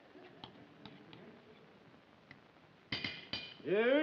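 Light clinks of a spoon against a dish as dog food is spooned out, then two sharper knocks about half a second apart near the end. A man's voice starts just before the end.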